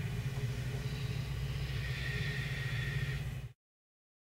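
Steady low background rumble with a faint high hum over it, cutting off abruptly about three and a half seconds in.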